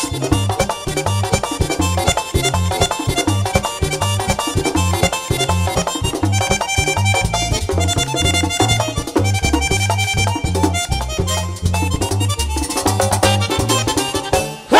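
Live merengue típico band playing an instrumental passage: accordion leading over a fast, steady rhythm section with a repeating bass pattern.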